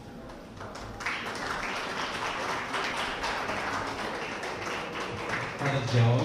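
Audience applauding, starting about a second in and going on steadily, with a short low boom near the end.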